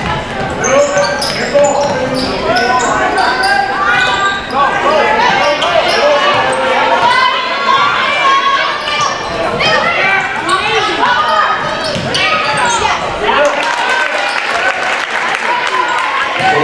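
Basketball bouncing on a hardwood gym floor during play, with overlapping voices echoing around the gymnasium.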